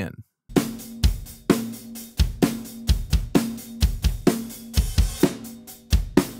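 Acoustic drum kit recording playing back in a steady beat, its kick and snare layered with triggered one-shot samples: deep kick thumps alternate with ringing snare hits over cymbals. It starts about half a second in.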